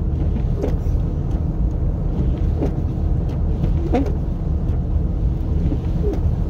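Steady low road rumble and tyre noise inside a moving car's cabin, the car driving on wet pavement.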